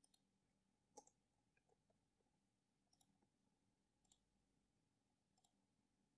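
Near silence, with a handful of faint computer clicks spread through it, the clearest about a second in.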